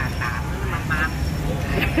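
Steady low rumble of street traffic, motorbikes among it, under short snatches of talk.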